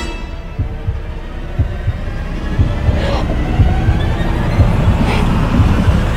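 Trailer sound design: deep, heartbeat-like thuds about once a second, growing louder, under a low drone, with brief rising swooshes about three and five seconds in.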